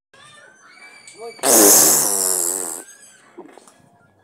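A loud, rasping, buzzing noise with a wavering pitch, starting about a second and a half in and lasting about a second and a half before fading out.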